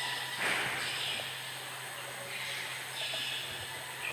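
A church sound system's steady low hum and hiss, with faint breaths and a brief rustle close to the lectern microphone about half a second in.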